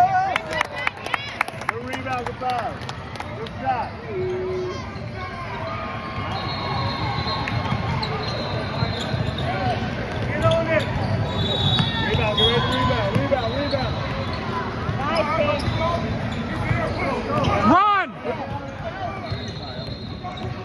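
Basketball game on a hardwood gym floor: the ball bouncing, with a quick run of dribbles in the first couple of seconds, and players' sneakers squeaking on the court, over spectator chatter in the gym.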